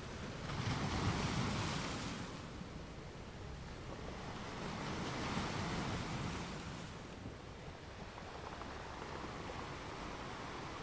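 Wind rumble and rushing on the microphone of a camera riding in a slow-moving vehicle. It swells twice, about a second in and again around five to six seconds.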